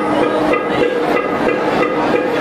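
Dholki, the two-headed barrel drum, played live in a brisk rhythm over sustained melodic accompaniment.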